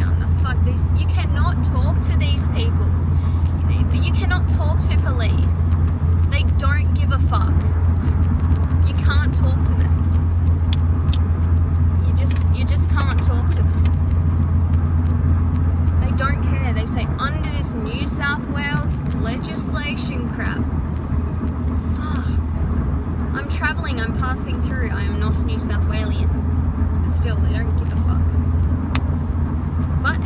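Steady low rumble of car cabin noise from a car being driven, easing slightly about halfway through, with a woman talking over it.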